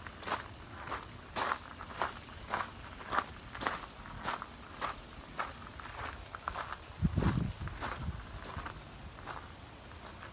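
Footsteps on a loose gravel path, at an even walking pace of about two steps a second, with a brief low rumble about seven seconds in. The steps fade near the end.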